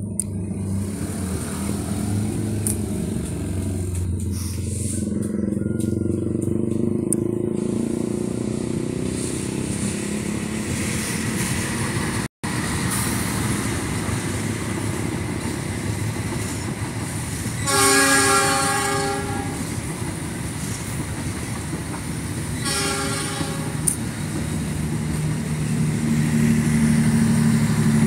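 Passenger train passing with a steady rumble. Its horn sounds twice in the second half: a long blast, which is the loudest sound, and then a shorter one. The sound breaks off briefly near the middle.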